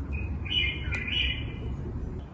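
A small bird chirping: a quick run of bright chirps lasting about a second and a half, over a steady low background rumble.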